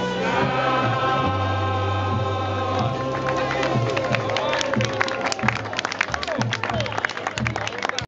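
A ukulele group with singers holding the final chord of a song, which dies away about three seconds in. Scattered handclapping and voices follow.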